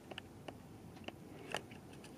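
Faint, irregular small clicks and ticks, a few each second, with no steady sound under them.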